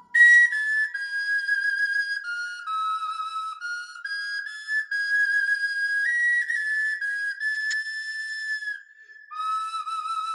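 A small hand-held flute played solo: a slow, breathy melody of held high notes stepping up and down, with a short break for breath just before nine seconds in.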